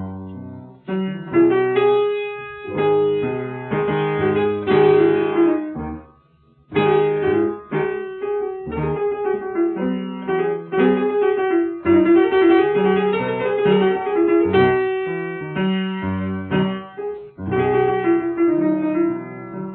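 Solo piano playing Persian classical music in the mode (dastgah) Segah: a dense run of quick, repeated notes that breaks off for a brief pause about six seconds in, then resumes.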